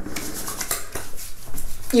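Hands handling a bottle of witch hazel and rubbing it onto the face and neck after a shave: a string of light clicks and rustles.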